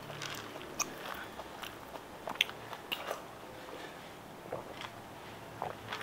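A person chewing food close to the microphone, with short clicks and smacks of the mouth scattered irregularly through it.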